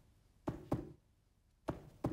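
Feet stomping on a floor in a slow beat: two stomps about a quarter second apart, then another about a second later. These are the first two beats of a stomp-stomp-clap rhythm.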